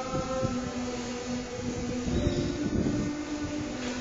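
Recorded worship song playing in a hall, with long held notes over a low beat.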